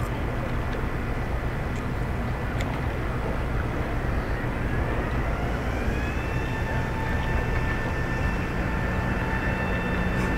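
Low steady rumble of harbour tug engines working a large warship alongside. A whine rises from about four seconds in and then holds steady, and a low hum joins near the end.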